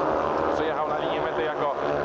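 A man talking in Polish over the steady running of speedway motorcycles' single-cylinder engines as they race round the track.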